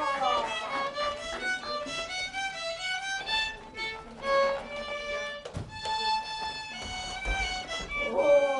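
Violin playing a slow melody of held notes that step up and down.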